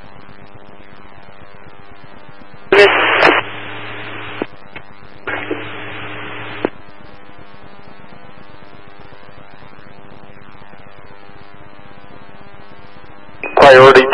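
Emergency-services radio heard through a scanner: a steady faint hiss, broken about three seconds in by a short loud burst as a transmission is keyed, then about a second of static with a low hum, and another stretch of static from about five to six and a half seconds in, with no clear words.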